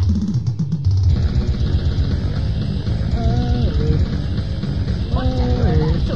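Grindcore band demo recording: a dense, fast rhythm of drums, bass and guitar, with a voice coming in on short held, sung notes about three seconds in and again near the end.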